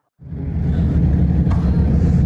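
A moment of silence, then a sudden start of loud, steady low rumble from car engines idling close by.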